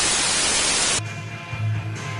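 A burst of TV static hiss, about a second long, that cuts off suddenly, followed by a low steady hum.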